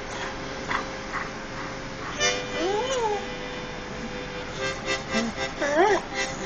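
Irish setter howling along to music: one short howl that rises and falls about two seconds in, and another rising howl starting near the end, over a steady held musical note.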